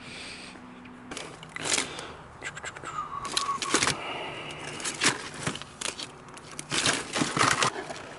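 Packaged fish-head jig lures rustling and clicking as a hand rummages through them in a clear plastic storage bin, with irregular crinkles and clatters of the plastic packs.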